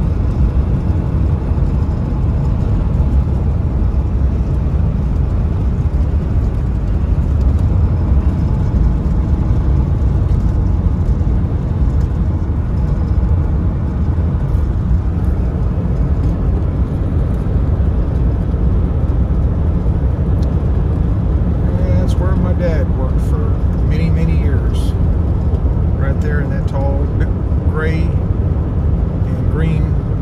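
Steady low road and engine rumble inside a moving vehicle's cabin at highway speed. A voice comes in over it in the last several seconds.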